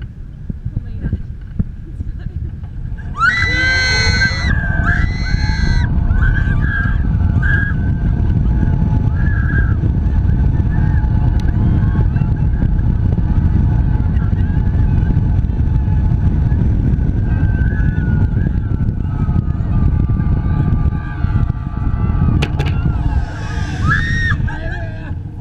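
Wind buffeting the microphone on a moving zipline ride, starting loud about three seconds in as the ride sets off. A woman screams at that moment and again near the end, and a whine rises in pitch as the ride picks up speed.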